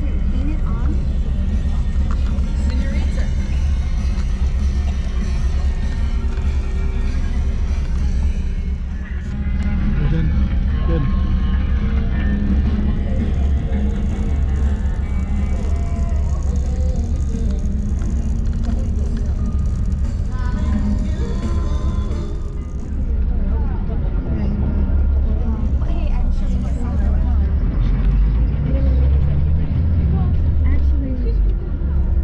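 Steady low rumble of a bus's engine and road noise heard from inside the passenger cabin, with passengers' chatter and music over it.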